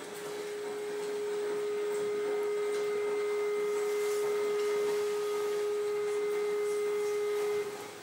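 A single steady pure tone at one mid pitch, like a sine tone, that swells in over about two seconds, holds unwavering, then cuts off suddenly near the end.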